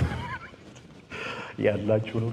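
A man's amplified voice through a handheld microphone: a high, wavering cry in the first half second, then loud impassioned speech from about a second in.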